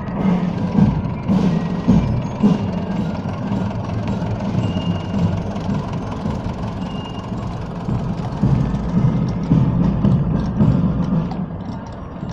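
Outdoor parade music with a drumbeat, and the running engine of a passing tractor mixed in, with irregular knocks.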